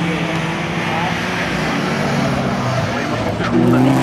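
Several folkrace cars' engines running hard around the track, heard from across the course, their engine notes rising near the end as the cars come up the straight.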